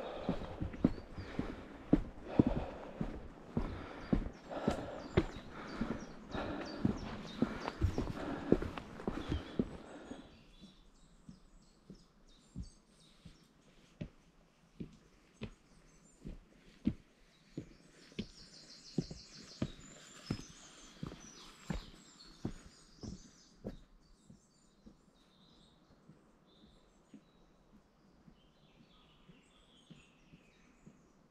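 Footsteps on timber boardwalk planking and wooden steps, regular knocks about two a second, louder for the first ten seconds and then fainter. Small birds chirp now and then in the second half.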